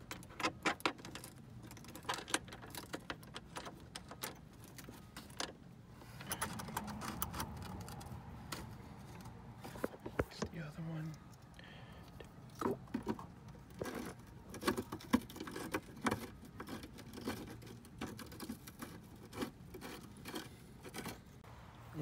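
Scattered clicks, clinks and light knocks of hand work on a car's radiator hoses and their metal clamps as they are fitted and tightened.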